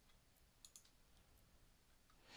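A few faint, short computer mouse clicks over near silence.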